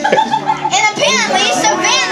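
Young children's voices chattering and calling out, with other voices mixed in and a high rising-and-falling child's cry a little under a second in.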